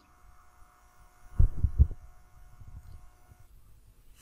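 Two dull low thumps close together, about half a second apart, a bit over a second in, over a faint steady hum.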